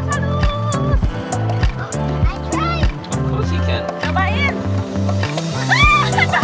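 Background music: a song with a steady drum beat, a bass line and a voice line over it.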